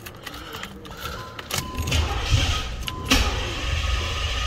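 Ignition of a carbureted 1988 Chevrolet Caprice switched on: a steady warning chime sounds for about two seconds while the engine cranks, catches with a sharp burst about three seconds in, and settles into a steady low rumble.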